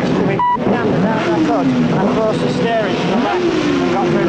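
Several racing motorcycle engines running and being revved at once, their pitches rising and falling over one another, with a short steady high tone about half a second in.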